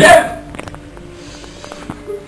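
A young man's short, sharp vocal gasp right at the start, then low room noise with a few faint clicks.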